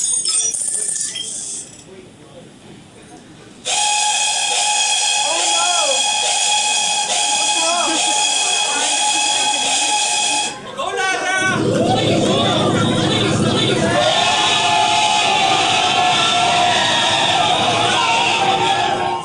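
Sound effects played over a PA system for the skit's machine prop. A steady, whistle-like chord of tones starts about four seconds in and cuts off suddenly near the middle. A loud low rumble follows, then more steady tones, with voices and laughter over them.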